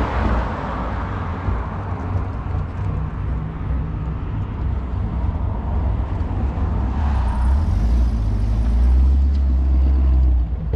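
Steady low motor-vehicle rumble, swelling louder in the last few seconds.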